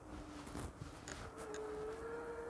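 Faint whine of an e-bike's hub motor under pedal assist, stepping up to a higher pitch about halfway through and then holding steady, over low wind rustle on a microphone inside a jacket.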